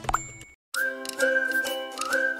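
A short pop-and-ding sound effect as an on-screen subscribe button is clicked, then a brief silent gap, then light, cheerful instrumental intro music starting about three-quarters of a second in.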